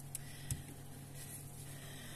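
Quiet handling noise over a low steady hum: a few faint clicks, the clearest about half a second in, as hands move on a plastic tub of perlite and take up a knife.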